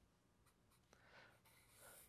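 Very faint scratching of a felt-tip marker writing, near silence.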